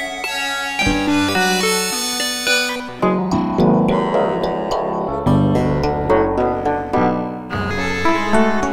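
A melodic line of sampled notes played through Ableton's Sampler, with its FM oscillator modulating the samples. About three seconds in the timbre shifts sharply as the oscillator's coarse ratio is changed.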